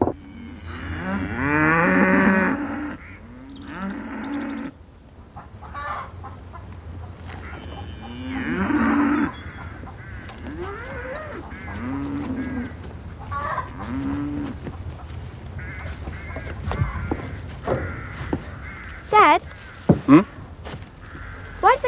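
Cattle mooing: a string of long, drawn-out calls, loudest in the first few seconds and again about eight seconds in, followed by several shorter, fainter moos.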